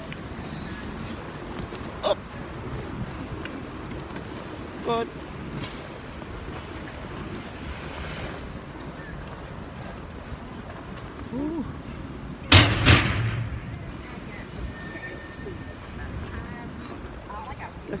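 Steady outdoor city street noise, with two loud sharp knocks in quick succession about twelve and a half seconds in.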